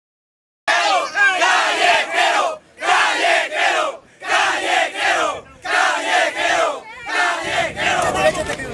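A crowd of men shouting and chanting together in celebration, in repeated loud bursts about one every second, starting abruptly just under a second in after silence.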